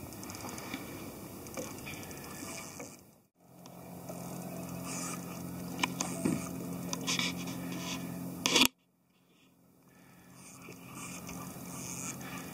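Scraping and rubbing handling noise close to the microphone as an angler works a spinning rod and reel against a hooked fish, with several sharp clicks in the later part. The sound dips out briefly about three seconds in and cuts to silence for about a second after the eighth second.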